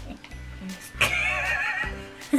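A horse whinny: a loud, high, wavering cry about a second long, starting about a second in, over background music.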